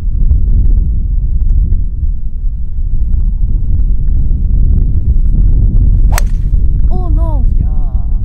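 Wind buffeting the microphone, then, about six seconds in, a single sharp crack as a 3-wood strikes a golf ball off the fairway. Brief exclamations follow near the end.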